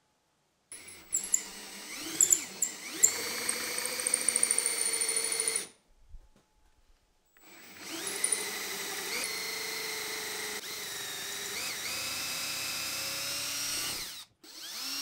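Hand-held electric drill boring into an Ironbark hardwood stool leg through a scrap-wood drill guide, in two runs. The motor spins up about a second in and runs steadily for about five seconds, stops briefly about halfway, then spins up again and runs until just before the end.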